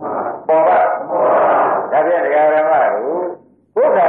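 Speech: a monk's voice preaching in Burmese, with long drawn-out syllables and a short pause near the end.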